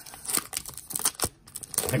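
Foil wrapper of a baseball card pack being torn open and crinkled by hand, in irregular crackles with a short lull near the end.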